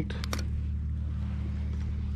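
A steady low hum, with a few short clicks just after the start.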